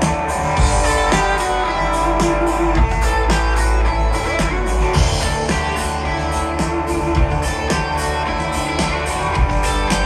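Live country band playing the opening of a song: electric guitars over a steady drum beat, amplified through the PA.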